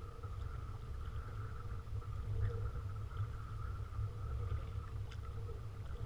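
Sit-on-top fishing kayak being paddled over shallow water: a steady low rumble of wind and water on the hull-mounted microphone, with faint paddle and water ticks and a faint steady hum.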